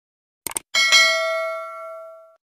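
Sound effect of a quick mouse double click, then a single bright notification bell chime that rings and slowly fades over about a second and a half.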